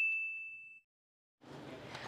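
A single bright, bell-like ding rings out and fades away over about the first second, leaving near silence; faint background hiss comes up near the end.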